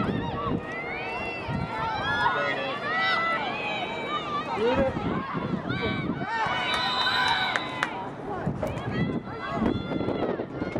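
Several players' voices shouting and calling out across an outdoor lacrosse field during play, overlapping in short calls, with one longer held call about seven seconds in.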